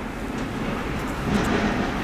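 Autosan Sancity 12LF city bus running steadily, its engine swelling briefly about a second and a half in.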